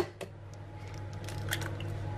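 Faint soft squelch of raw eggs in a glass bowl with a few light clicks, over a steady low hum from a preheating oven.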